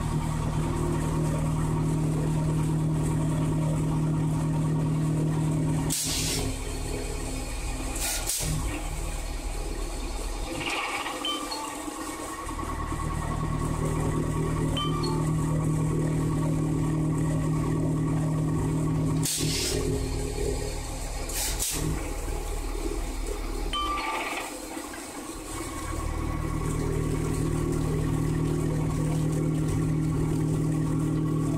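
Egg tray pulp-molding machine running with a steady low motor hum. Twice, two short sharp bursts come about two seconds apart and the low hum then drops out for about two seconds, in a cycle repeating roughly every thirteen seconds, with water running underneath.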